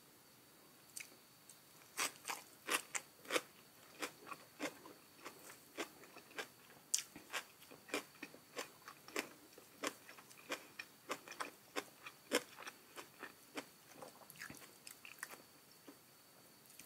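Close-miked chewing of a mouthful of raw leafy greens: a run of sharp, crisp crunches, two or three a second, starting about two seconds in.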